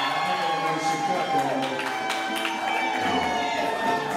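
Live band playing loose, long-held notes over a bass line, the bass note dropping lower about three seconds in.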